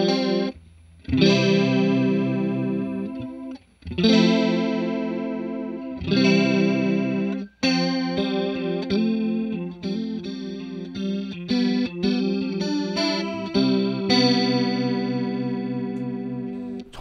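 Clean electric guitar chords from a Fender Stratocaster HSS through a Fender '65 Twin Reverb, run through a Grobert Second One pedal in chorus mode, giving a wavering, shimmering chorus. The playing stops briefly about half a second in, near four seconds and again near seven and a half seconds.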